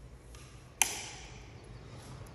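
A single sharp click about a second in, with a brief ring echoing in the bare garage.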